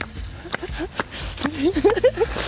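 Double-sided tape crackling as it is pulled off the roll and laid along the stone edge of a pool, with several sharp clicks. A short stretch of voice comes in the second half.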